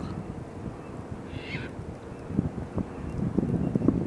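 Wind buffeting the microphone as a low rumble, with scattered low knocks in the second half and one brief, faint falling call about a second and a half in.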